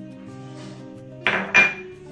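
Two sharp clinks about a third of a second apart, the second briefly ringing: a small glass bowl knocked against the rim of a ceramic mixing bowl to empty out sugar. Background music with held notes plays underneath.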